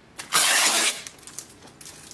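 A sheet of printed paper rustling briefly as it is picked up and handled, followed by a few faint clicks.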